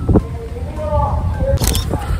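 Indistinct voices over a steady low rumble of wind on the microphone, with a short sharp burst of noise near the end.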